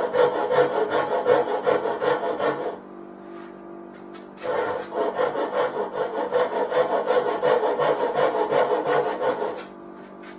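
A hand tool cutting the wood of a mandolin neck in quick back-and-forth strokes as the neck is carved down to depth. The strokes pause for about a second and a half near the three-second mark, then resume and stop just before the end.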